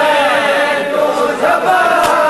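A noha, a Shia Muharram lament, chanted by men's voices in a slow melodic line with long held, bending notes.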